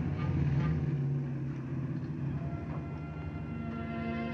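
A Sunbeam Alpine convertible's engine running with a steady low hum as the car drives up and comes to a stop, fading out after about two and a half seconds. Soft sustained orchestral tones come in over it near the end.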